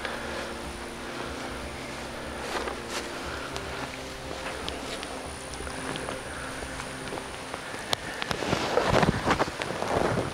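A steady low mechanical hum with a few scattered clicks, then a louder stretch of rustling and scuffing near the end.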